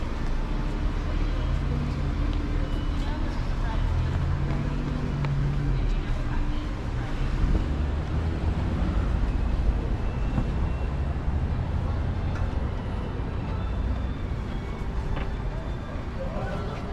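City street traffic: car engines running and passing at an intersection, a steady low rumble, with passers-by talking.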